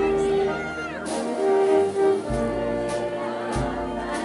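Procession band music: long held notes in harmony over slow, heavy drum beats.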